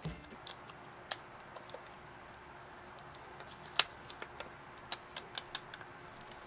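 Thin plastic protective film being peeled off a smartphone: scattered small crinkles and clicks, the sharpest a little under four seconds in, then a quicker run of them near the end.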